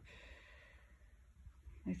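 A faint breath out between spoken phrases, over a low steady background hum; speech starts again at the very end.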